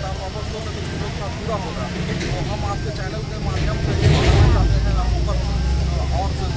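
Men talking in an outdoor crowd over a steady low rumble. The rumble grows louder, with a hiss, about three and a half seconds in and eases near the end.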